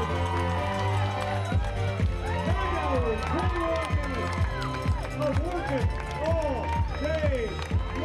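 Background music: a steady bass with repeated swooping, gliding tones over it.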